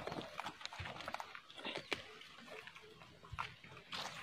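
Faint, irregular short calls and clicks of wild quail at a cage trap set in the brush.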